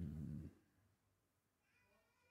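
The end of a man's long, hummed "um" fades out about half a second in. After that it is nearly quiet, with a faint high pitched sound near the end.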